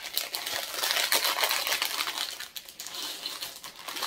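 Thin clear plastic packaging bag crinkling and rustling as it is opened and handled, a steady crackle of small clicks while gold chain necklaces are taken out of it.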